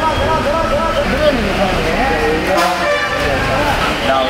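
People talking over traffic noise, with a vehicle horn sounding once for about half a second, a little past the middle.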